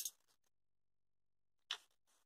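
Near silence, with a faint click at the start and one short, faint rustle near the end as the paper pattern is handled on the fabric.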